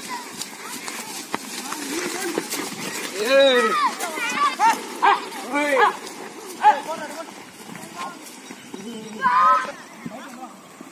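Men shouting drawn-out calls to drive a yoked pair of bulls dragging a stone block, several calls in quick succession from about three seconds in and one more near the end. Beneath them, scattered short thuds and scuffs of the bulls and runners moving over the soil.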